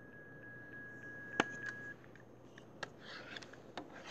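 A few faint, sharp clicks at a computer, the loudest about a second and a half in, with a steady high whine for the first two seconds.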